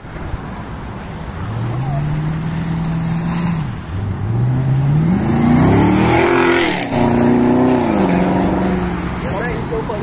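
Yellow Chevrolet Camaro's engine revving hard as it accelerates past. The pitch climbs and holds, drops back about four seconds in, then climbs steeply to its loudest as the car goes by, with a short break in the note. It holds high, then falls away near the end.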